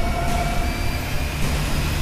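Steady, droning background music bed with a low rumble and a few faint held tones.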